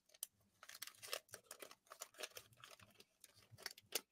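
Faint, irregular crackling of a 1983 Topps wax-paper pack wrapper being peeled open by hand, a scatter of small crinkles and ticks.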